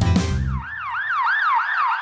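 Cartoon siren sound effect: a fast rising-and-falling wail, about four sweeps a second. It comes in as the children's song music stops, about half a second in.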